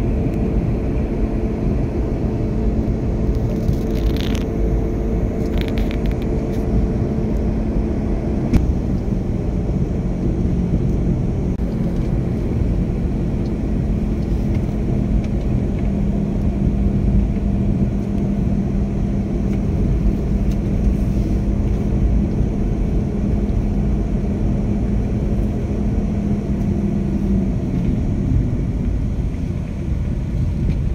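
Car cabin noise while driving: a low road and engine rumble with a steady engine hum that drops slightly in pitch about eight seconds in. A few brief clicks come around four and six seconds in.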